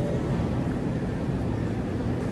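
Wire shopping cart's wheels rolling over a tiled floor: a steady low rumble.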